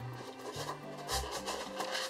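Cardboard packaging scraping and rustling in short bursts as a mug's white box insert is pulled out, over quiet background music with low bass notes.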